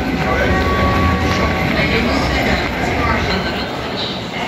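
Wheeled suitcases rolling over a hard tiled floor, a steady low rumble, with people's voices talking around it.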